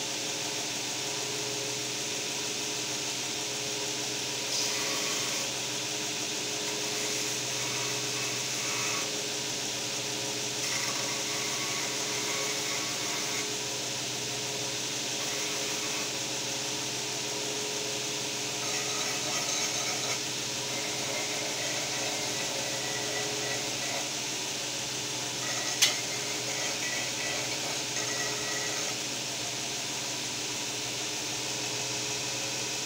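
Electric belt grinder running steadily with a constant motor hum, with one sharp click about 26 seconds in.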